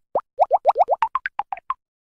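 Cartoon 'plop' sound effects from an animated logo: a quick run of about a dozen short popping blips, each gliding upward in pitch, the later ones higher and shorter, one for each letter popping into place.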